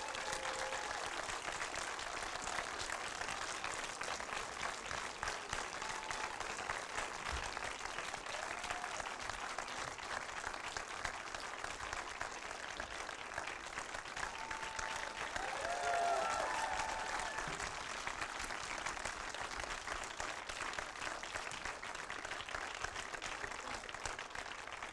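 Theatre audience applauding steadily, with a few short voices calling out over it. The applause swells briefly about two-thirds of the way through.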